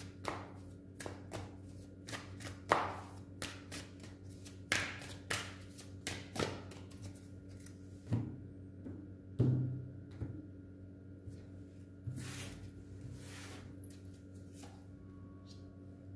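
A tarot deck being shuffled by hand: quick irregular clicks and slaps of cards against each other for the first several seconds, then a few dull thumps as the deck is set down on the table and cards are handled, over a faint steady hum.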